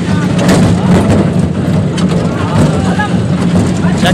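Small ride-on zoo train under way, heard from inside an open carriage: its engine makes a steady low drone that holds throughout.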